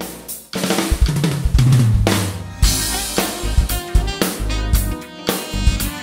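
A drum kit playing a groove, with snare, kick drum and cymbals over backing music, starting abruptly about half a second in.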